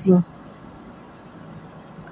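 A woman's voice finishing a word, then a faint steady background hum with no distinct events.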